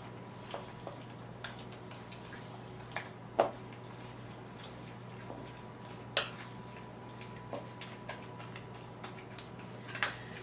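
Wooden spoon stirring soaked croissant pieces in an egg-and-milk custard in a bowl: scattered soft taps and wet squelches, the loudest a little over three seconds in and another about six seconds in, over a steady low hum.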